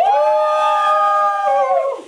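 A teenager's long, high held 'ooo' howl: it swoops up, holds steady for about a second and a half, then falls away and stops near the end.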